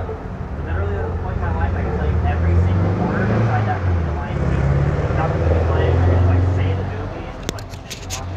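Indistinct talking of people on a street, over a steady low rumble. A few sharp clicks come near the end.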